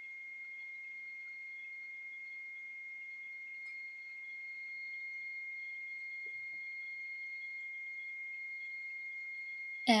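A steady high-pitched whine: one unchanging tone with a fainter tone above it, over faint room noise.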